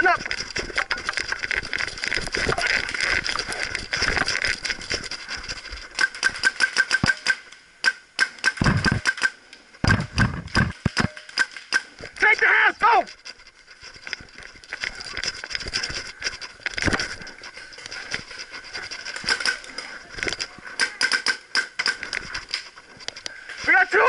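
Paintball markers firing in rapid volleys of sharp pops, several bursts at roughly ten shots a second with gaps between them. A player's shout cuts in briefly about halfway through.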